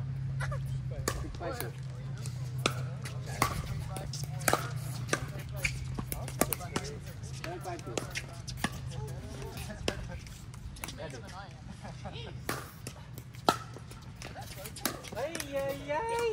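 Pickleball paddles hitting the hollow plastic ball in rallies: irregular sharp pops, a few per second at times, the loudest about thirteen seconds in. Under them run faint voices and a low steady hum that fades out about ten seconds in.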